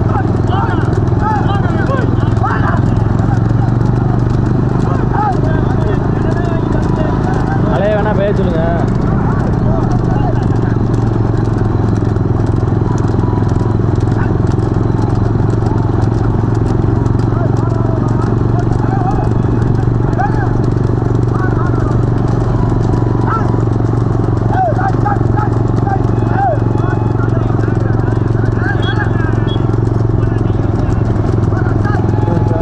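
Bullock cart racing on a paved road: a pair of bulls' hooves clip-clop on the asphalt under the steady drone of a pack of motorcycles riding alongside, with men shouting and calling throughout.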